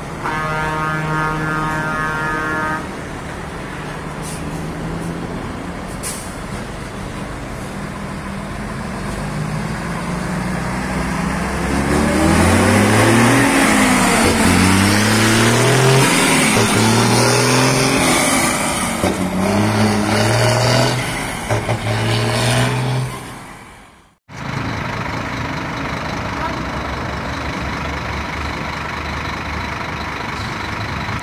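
Diesel truck engine pulling away close by, its pitch climbing several times in steps as it goes up through the gears, getting louder as it passes. Before it, a steady pitched drone lasts about three seconds. After a sudden cut near the end comes steady traffic noise.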